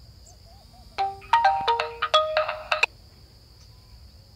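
A mobile phone ringtone plays a short electronic melody of stepped beeping notes for about two seconds, starting about a second in and cutting off abruptly, over a steady high insect trill from crickets.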